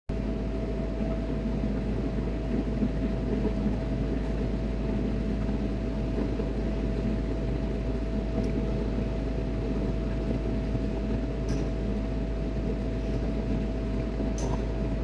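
Steady ship machinery noise, a constant low drone with a thin steady whine held over it. A couple of faint clicks sound late on.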